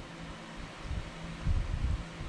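Steady background hiss of room tone, with a brief low rumble about one and a half seconds in.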